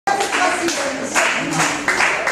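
Audience clapping, a dense patter of many hands, with voices mixed in.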